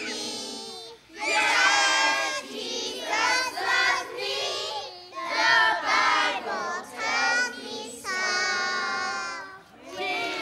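A group of children singing a song together, in sung phrases with held notes and short breaths between them: about a second in, around five seconds in, and near the end.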